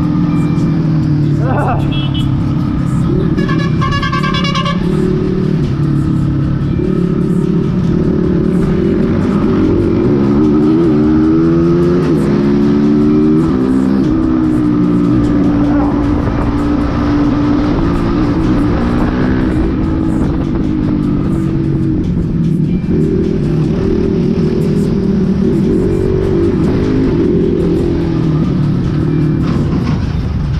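Motorcycle engine running under way, its pitch rising and falling with throttle and gear changes around the middle. A horn sounds for a couple of seconds a few seconds in.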